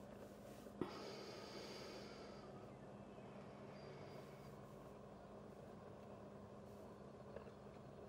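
Near silence with a faint steady hum, broken by a single sharp click about a second in and a smaller one near the end.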